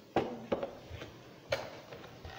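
Cardboard figure box and its packaging being handled on a table: three sharp knocks, two close together near the start and one about a second later.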